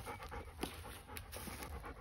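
A dog panting softly, open-mouthed.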